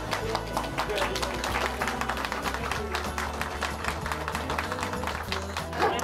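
An audience clapping, dense and irregular, over background music with a steady low bass.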